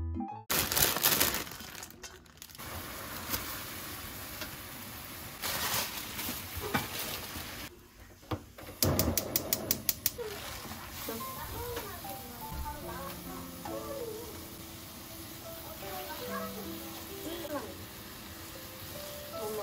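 Kitchen sounds of water being readied in a pan for blanching spinach: an even rush of water noise. About halfway through comes a quick run of about eight sharp clicks, and soft background music comes in after that.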